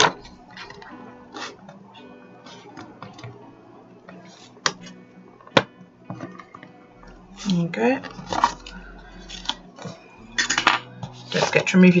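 A few sharp clicks and taps from an awl and a card booklet being handled on a desk. The loudest clicks come right at the start and about five seconds in, over faint background music.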